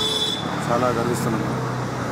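A man speaking Telugu, in short phrases, over a steady low background hum.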